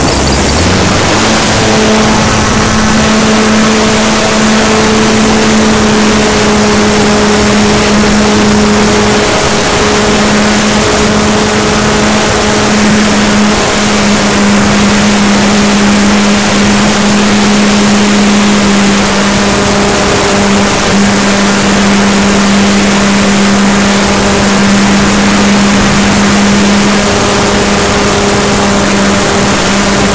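Model airplane's motor and propeller at full throttle, heard from a camera on board: a loud, steady drone that starts suddenly on the takeoff run and holds one pitch through the climb, over a constant rush of air.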